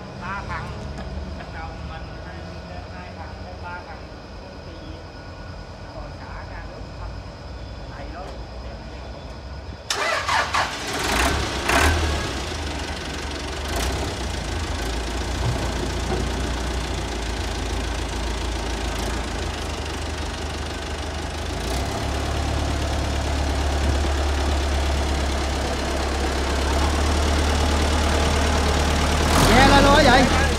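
Kubota M7000DT tractor's diesel engine running with a steady low rumble. It is quieter at first, then jumps suddenly louder about a third of the way in, and runs louder still for several seconds near the end as its speed is raised.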